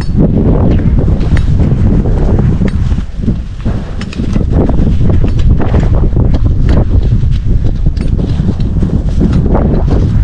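Wind blowing across the camera's microphone: a loud, continuous low rumble that eases off briefly about three seconds in, then comes back.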